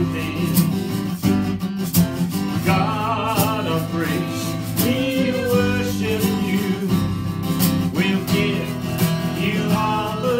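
A man singing a slow song while strumming an acoustic guitar in a steady rhythm, his held notes wavering in pitch.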